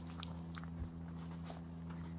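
Faint footsteps crunching on a dry dirt path, with a few soft clicks and rustles, over a steady low hum.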